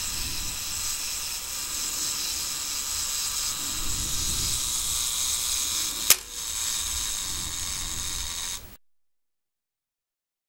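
Clockwork self-timer of a Yashica FX-7 35mm SLR running down with a steady high-pitched mechanical whirr, with one sharp click of the mechanism about six seconds in. The sound cuts off abruptly near the end.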